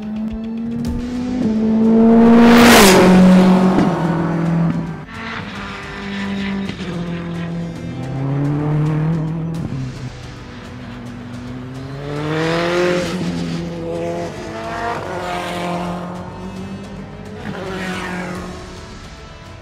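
Praga R1 race car engine revving hard and shifting up through the gears, its pitch climbing and then dropping at each shift, loudest about three seconds in. Music plays underneath.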